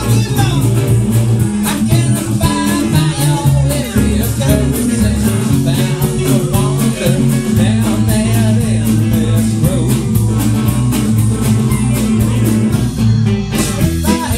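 Live band music: upright bass and drums keeping a steady beat under resonator guitar and keyboard, in an instrumental passage between sung verses.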